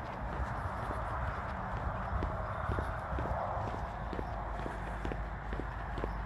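Footsteps on an asphalt road at a walking pace of about two steps a second, over a steady background hiss and rumble.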